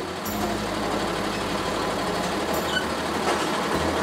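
Vehicle noise, a motor running steadily under an even hiss.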